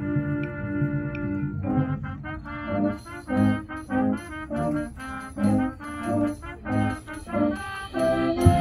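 Middle school concert band playing, led by brass: a held chord, then a passage of short, separated notes about twice a second.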